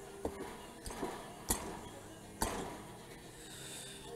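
Honda CT70 cylinder barrel being pushed down the studs over the piston onto the crankcase: a few light metallic clicks and knocks, the two loudest about a second and a half and two and a half seconds in.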